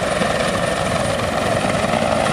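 Coast guard helicopter's rotor running steadily as it hovers over the sea, a continuous chopping drone.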